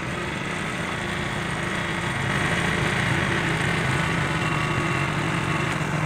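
A vehicle engine running steadily while under way on a rough road, with the engine and road noise growing gradually louder.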